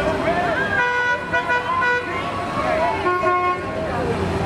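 Bluesmobile's horn honking as the car rolls past, two held toots: the first about a second in and lasting about a second, the second shorter, past the three-second mark. Voices of the onlookers are heard around the toots.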